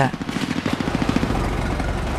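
A rapid, even mechanical rattle of about twenty beats a second that blurs into a steady low rumble about halfway through.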